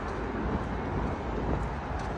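Wind buffeting the phone's microphone outdoors: a steady rush with an uneven low rumble.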